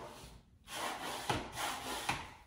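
Green plastic wallpaper smoother rubbed across hung wallpaper, a scraping rub in a few short strokes that starts after a brief pause about half a second in.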